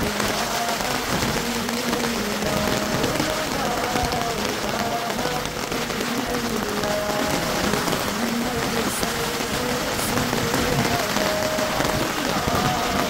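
Heavy rain falling on a wet path and puddles: a dense, steady hiss. Soft background music with slow, held notes plays over it.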